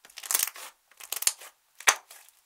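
Thick red slime, clear slime with crushed eyeshadow worked into it, being squeezed and kneaded by hand, giving off irregular crackles and small pops. A sharp pop near the end is the loudest.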